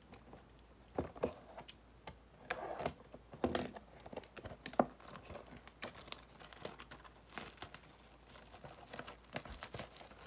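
Plastic wrap crinkling and tearing amid irregular clicks and taps as a cardboard blaster box of trading cards is unwrapped and handled.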